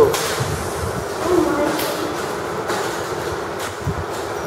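Steady rumbling background noise with no clear strokes or impacts, and a brief faint voice about a third of the way in.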